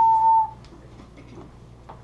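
A small handheld whistle blown in one steady, clear note that stops about half a second in.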